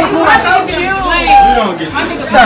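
Several people talking at once in a room: overlapping chatter, with no one voice clear enough to make out words.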